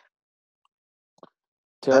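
Near silence on a video-call line, broken by one faint, very short pop about a second in. A man starts speaking near the end.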